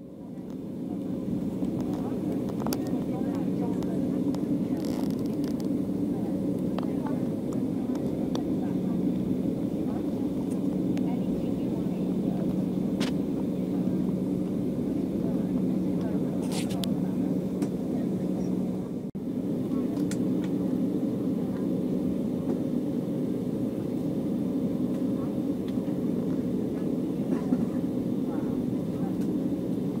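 Cabin noise inside an Embraer 195 airliner as it taxis: a steady hum of the idling turbofan engines and cabin air, with a few faint clicks. The sound drops out once, briefly, about two-thirds of the way through.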